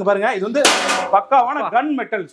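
A man talking in Tamil, with a short, loud burst of noise about two-thirds of a second in.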